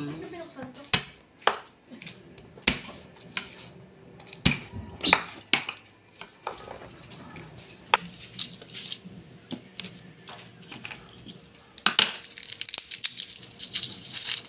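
Kitchen knife knocking on a wooden cutting board at irregular intervals as garlic cloves are cut. Near the end, a denser papery crackle as a garlic bulb is broken apart by hand.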